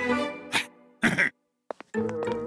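Cartoon soundtrack: the music breaks off, then two short rough bursts about half a second apart, a brief silence, and a few faint clicks just before the music comes back.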